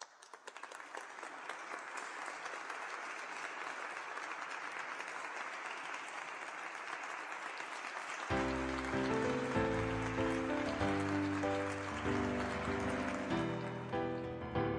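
Audience applause swells in and holds steady for about eight seconds, then piano music begins.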